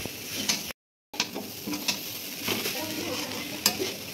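A spatula stirring and scraping a dry, crumbly pithe filling in a metal pan, with a light sizzle and repeated scrapes against the pan. The sound cuts out completely for a moment a little under a second in, then resumes.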